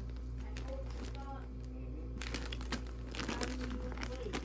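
Clear plastic storage bag crinkling as hands rummage through the fabric yo-yos packed inside it, the crackle thickest in the second half.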